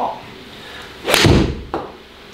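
Golf iron striking a ball off an artificial-turf hitting mat: one sharp strike about a second in, with a low thud ringing on briefly after it. The shot was caught off the toe.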